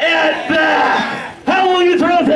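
A man's voice through a microphone and PA, shouted and drawn out in long held syllables.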